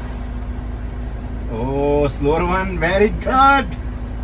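A car engine idling steadily with a low rumble and hum. About halfway through, a voice calls out in a few long, drawn-out phrases over it.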